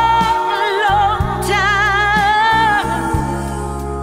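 Music: a woman's lead vocal holding two long notes with vibrato, the first fading about a second in and the second starting soon after, over a band accompaniment with bass.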